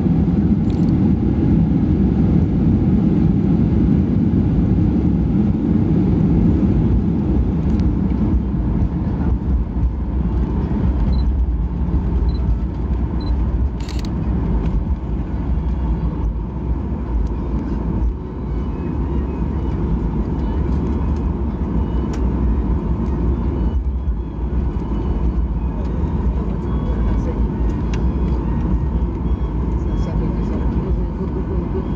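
Steady low rumble in the cabin of a Boeing 737-800 rolling along the runway and taxiway after landing, its CFM56-7B engines at low power, heaviest in the first few seconds.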